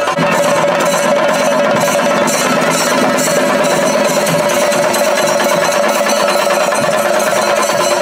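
Chenda melam: a group of chenda drums struck with sticks in a fast, unbroken roll, loud and steady throughout.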